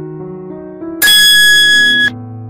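Background music with a simple stepping melody, then about a second in a loud, bright ringing chime starts suddenly and lasts about a second: the notification-bell sound effect of a subscribe animation.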